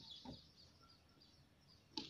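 Near silence: faint outdoor background with a few faint, short bird chirps.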